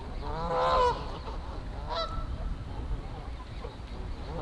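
Geese honking: one drawn-out honk in the first second, the loudest sound, then a shorter call about two seconds in, over a low background rumble.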